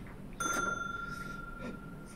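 A single bell-like ding about half a second in, a clear ringing note that fades slowly over about a second and a half.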